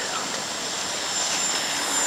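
Steady city street background noise at night, mostly distant traffic, with a faint high steady whine running through it.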